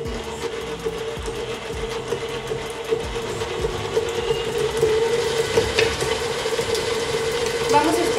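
Electric stand mixer running at its highest speed with a steady motor whine as the flat beater whips butter in a stainless steel bowl. This is the first stage of a buttercream, with the butter being beaten until fluffy.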